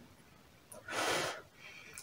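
A woman sniffing perfume sprayed on her wrist: one breath drawn in through the nose, about half a second long, about a second in.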